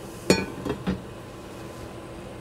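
A frying pan set down on a gas stove's metal grate: one ringing metallic clink about a third of a second in, then two lighter knocks.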